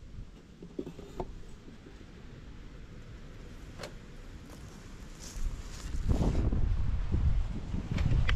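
Wind rumbling on the camera's microphone, with a few light knocks early on; the rumble grows much louder about six seconds in as the camera is moved.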